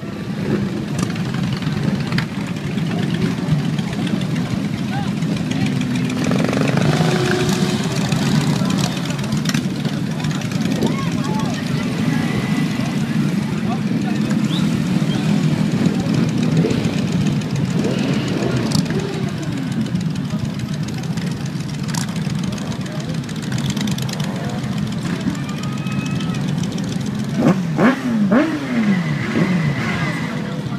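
Many motorcycle engines running as a procession of bikes rolls slowly past, with crowd chatter mixed in. A few sharp revs rise and fall a couple of seconds before the end.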